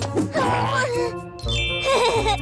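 Cartoon background music with a bright ding-like chime sound effect ringing out about a second and a half in.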